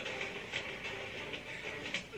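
The film's soundtrack playing low under the reaction: a steady rumbling noise with a few faint scattered ticks.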